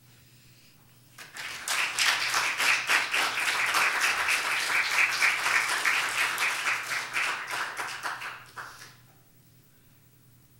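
Small congregation applauding: clapping that starts about a second in, holds steady for several seconds and dies away near the end.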